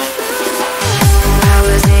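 Hands-up electronic dance music: a held synth lead line, then a heavy kick-drum beat comes in about a second in.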